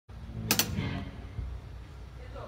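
Two quick, sharp clicks of a wooden drumstick about half a second in, a fraction of a second apart, over a steady low hum.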